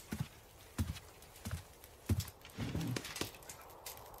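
Sound-effect horse walking, its hooves clopping in slow, irregular steps. A short low call is heard partway through.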